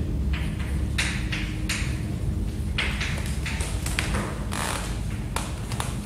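Chalk writing on a blackboard: short scratchy strokes and taps, about one a second, over a steady low room hum.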